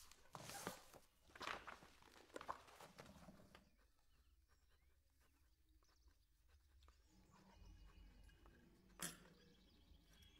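Faint footsteps on a hard floor, about one a second, for the first three seconds or so. Then a hush of room tone with faint bird chirps coming in and a single knock near the end.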